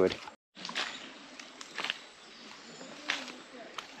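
Quiet outdoor ambience by a river, with a few faint rustles or clicks, after the tail of a spoken word and a brief dropout to silence.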